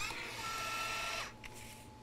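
FoodSaver vacuum sealer running steadily through the end of its vacuum-and-seal cycle, then shutting off a little over a second in as the seal completes.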